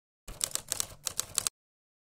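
Sound effect of rapid typewriter-like clicking: about ten sharp clicks in just over a second, stopping abruptly.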